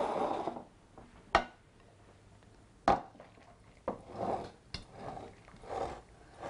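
Kitchenware handled against a ceramic mixing bowl of noodle kugel mixture: two sharp knocks about a second and a half apart, with softer scraping and shuffling between and after them.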